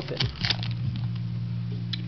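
Foil booster-pack wrapper crinkling a few times in the first half second as the pack is torn open and the cards slid out, then quieter over steady low background music.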